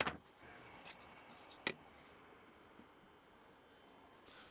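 Two light knocks of wood on wood, about a second and a half apart, with faint handling in between, as loose pine tray pieces are set together in a dry test fit.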